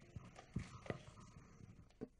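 A few faint, irregular knocks and thumps from people moving at a stage lectern: footsteps and bumps of handling near the microphone.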